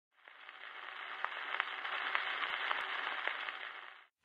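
Surface noise of a 78 rpm shellac record before the music: a soft, narrow-band hiss with scattered clicks and crackles. It fades in about half a second in and cuts off at the end.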